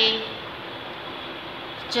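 Steady background noise with no distinct events, in a pause between a woman's spoken words; her voice trails off at the very start.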